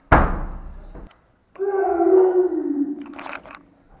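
A sudden thunk that dies away over about a second, then a person's voice: one drawn-out sound falling slowly in pitch, ending in a short hiss.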